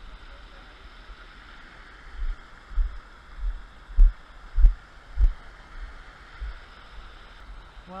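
Small stream and waterfall rushing steadily, with a run of low thumps in the middle, about one every half second, from the action camera being jostled as it is carried.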